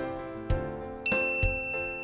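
A bright, ringing ding chime about a second in, marking a correct answer being ticked, over light background music with regularly plucked notes.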